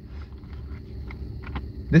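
A steady low rumble with a few faint, short clicks; a man's voice begins right at the end.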